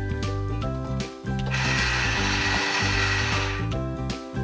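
Toy cash register's electronic scanning sound: a harsh buzz lasting about two seconds in the middle, over cheerful children's background music.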